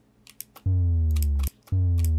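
Synthesized sub-bass boom from a Serum synth: a deep bass tone whose pitch slides slowly downward, starting abruptly and cut off after under a second, then starting again near the end. Soft mouse clicks come before each playback.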